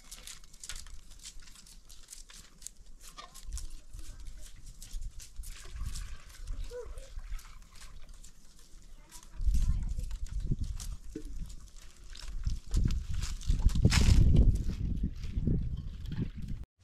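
Farm animals calling among scattered clicks and rustling, with loud low rumbles on the microphone twice in the second half.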